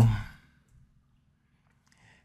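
A man's voice trailing off at the end of a drawn-out word in the first half-second, falling in pitch as it fades. Then near silence.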